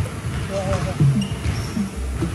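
People talking, with a basketball bouncing once on a hardwood gym floor about a second in.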